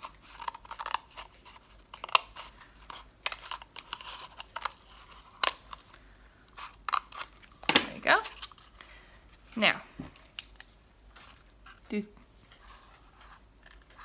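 Small scissors snipping through a cardboard toilet paper tube, a run of short, irregular snips over the first several seconds, followed by a few louder rustles of the cardboard being handled.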